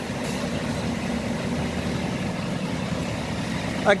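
Rear-mounted Euro 5 Scania diesel engine of a Scania K340 coach idling steadily, a low even rumble.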